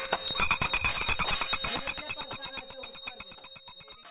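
Metal struck rapidly and ringing, about ten strokes a second, with a steady ring held over the strokes, fading away toward the end.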